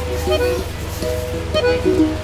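Background music: a light, plucked-string melody of separate, held notes.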